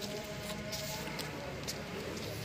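Outdoor background noise at moderate level with faint voices in the distance.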